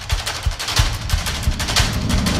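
A fast run of sharp cracks, several a second, over low thuds repeating a few times a second, like gunfire or a rapid percussion hit in the soundtrack.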